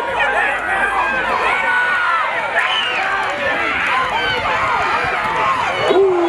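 Football crowd and sideline voices shouting and cheering over one another, many people at once.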